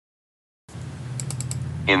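Dead silence at an edit, then the steady low hum of the recording comes in, with four quick faint clicks about a second in, before a voice begins near the end.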